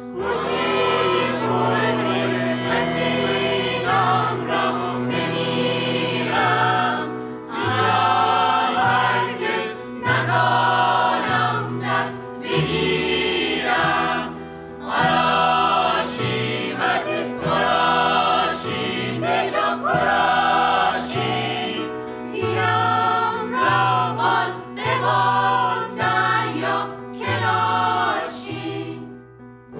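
Mixed choir of men and women singing an arranged Caspian Coast folk song in phrases with short breaks between them, over sustained low instrumental notes.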